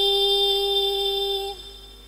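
A woman singing a Javanese syi'ir solo into a microphone, holding one long steady note that ends about a second and a half in.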